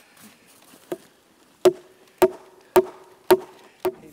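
Heavy blows pounding a black ash log, striking it to loosen its growth rings into splints for pack basket weavers. One blow about a second in, then five more about every half second, each with a brief ring.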